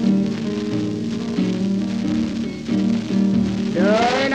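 Late-1920s blues recording: a piano and guitar instrumental break between sung lines, under the crackle and hiss of a worn 78 rpm record surface. A man's voice comes back in right at the end.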